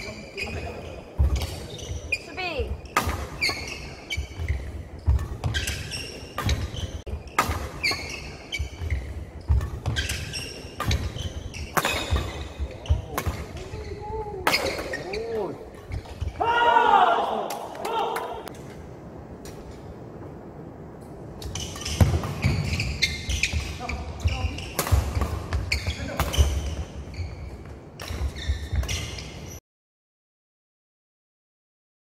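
Badminton doubles rallies on a wooden sports-hall floor: repeated sharp cracks of rackets striking the shuttlecock, rubber shoe soles squeaking and feet thudding on the boards. A voice calls out loudly about halfway through, play pauses briefly, then resumes, and the sound cuts off just before the end.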